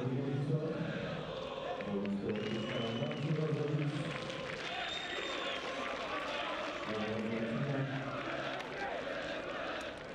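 A male television commentator talking in stretches over steady stadium crowd noise, with a couple of short high whistles.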